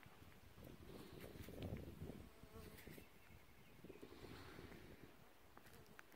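Faint buzzing of flying insects close around the microphone, barely above silence.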